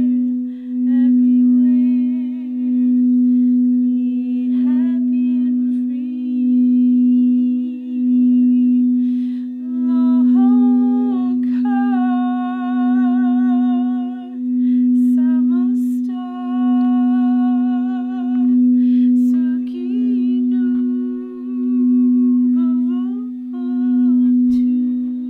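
A frosted quartz crystal singing bowl played by circling a mallet around its rim: one low steady tone that swells and dips about every two seconds. A voice hums and sings wordless, wavering tones over it, moving to new pitches several times.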